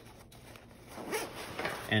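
Main zipper of a Marom Dolphin Baloo 40-liter backpack being pulled open, with nylon fabric shifting as the pack is moved, opening the bag clamshell-style. It is faint at first and grows louder in the second half.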